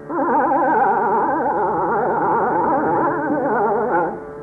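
Hindustani khayal singing in raag Hem Kalyan: a male voice holds one long phrase, its pitch shaking rapidly and evenly in a gamak, over a steady tanpura drone, and breaks off right at the end.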